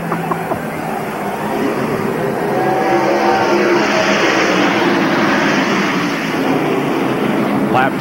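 A pack of NASCAR Winston Cup stock cars' V8 engines running at full throttle as the field accelerates on a restart, the sound swelling to its loudest about halfway through as the cars pass.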